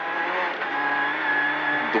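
Renault Clio N3 rally car's four-cylinder engine running at high, steady revs, heard from inside the cabin, with road noise under it.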